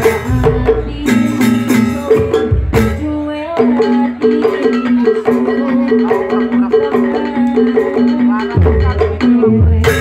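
Live Banyuwangi Janger music over the stage loudspeakers: women singing into microphones over a percussion-led ensemble with repeating pitched notes. The deep drum beats drop out about three and a half seconds in and come back near the end.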